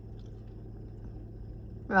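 Low, steady hum of a stationary car idling, heard from inside the cabin. A word of speech begins near the end.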